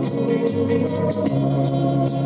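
Instrumental break of a Soviet pop-folk song played back from a reel-to-reel tape recorder: sustained keyboard chords over a steady ticking beat, with no singing.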